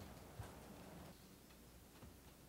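Near silence: faint room tone with a couple of soft knocks in the first half second.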